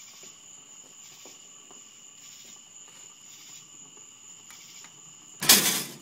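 Crickets trilling steadily in two high tones. Near the end comes one loud burst of noise about half a second long, a noise made at the recording that is then apologised for.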